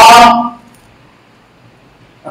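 A man's voice over a microphone finishes a phrase about half a second in, then a pause with only faint room tone.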